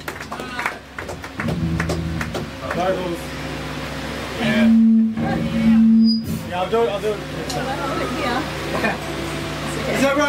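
Amplified electric guitar and bass holding low notes between songs, with two louder sustained notes around the middle, under people talking in the room.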